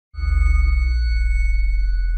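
Production-logo sound: after a moment of silence, a loud deep bass boom comes in with several high, steady ringing tones held above it.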